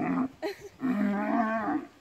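A cow calling: a short grunt at the start, then one drawn-out moo of about a second.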